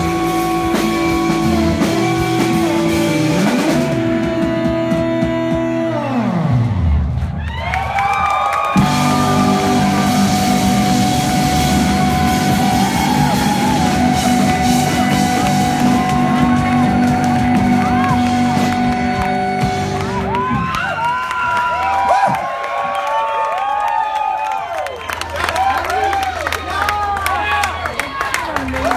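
Live indie rock band with electric guitars, bass and drums playing the closing stretch of a song. Long held notes and chords are broken by a long falling pitch sweep about seven seconds in. In the last several seconds the music thins and the crowd cheers and whoops.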